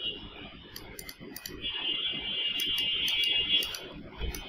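Computer mouse clicking several times in short, sharp clicks, with a steady high-pitched whine over the second half.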